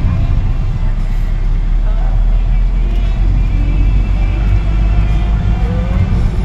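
Steady low rumble of a car's engine and tyres heard from inside the cabin while driving, with faint music and voices underneath.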